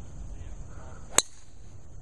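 Golf driver striking a teed ball: one sharp crack about a second in, with a brief ringing tail.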